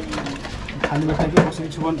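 Men's voices talking in short low phrases, with a few sharp clicks of cardboard medicine boxes being handled; the loudest click comes about one and a half seconds in.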